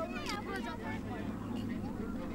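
Several people's voices talking and calling out indistinctly over a low, steady engine drone.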